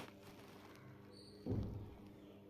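A single low thump about one and a half seconds in, over a steady low hum, with a brief high-pitched tone just before the thump.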